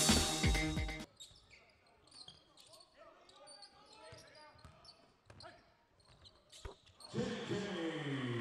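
The last second of upbeat intro music cuts off, leaving faint indoor basketball-court sound with a few sharp knocks of a ball bouncing on the hardwood. A man's voice starts talking near the end.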